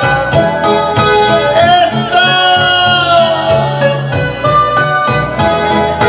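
Music from an electronic keyboard: sustained chords over a pulsing bass, with a gliding melody line in the middle.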